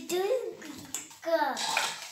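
A young child's wordless vocal sounds: two short babbling calls, the second falling in pitch, followed by a breathy hiss near the end.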